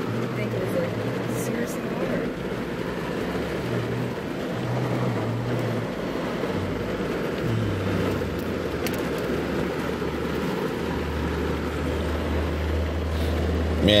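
Steady background rumble and hiss, with a low hum underneath that shifts in pitch a few times.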